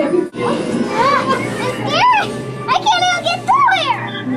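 A young child's high-pitched, wordless voice: four short rising-and-falling cries over background music.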